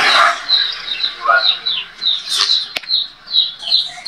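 A small bird chirping over and over: short, high, falling chirps, about three a second, with a single sharp click near the middle.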